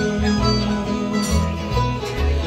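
Bluegrass band playing live with no singing: banjo, mandolin, acoustic guitar and dobro over upright bass notes.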